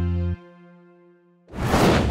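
The tail of a TV show's logo-bumper music: a held low chord that cuts off abruptly about a third of a second in. After a second of silence, a swoosh transition effect rises up near the end.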